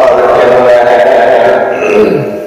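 Gurbani being chanted in a melodic recitation, a voice holding long, slowly bending notes that ease off near the end.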